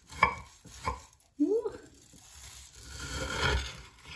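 A knife crunching down through the crisp fried shredded-pastry (kataifi) crust of an othmaliyeh: two sharp crunches in the first second, then a longer rasping crackle that builds and fades near the end as the blade saws through the crispy strands.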